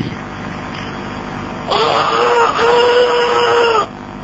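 A high, drawn-out wailing cry in two long held notes, the second ending in a downward fall, over a steady hiss.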